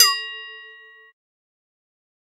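Edited-in sound effect: a quick falling swoop that lands on a bright bell-like ding. The ding rings out, fading, and cuts off abruptly about a second in.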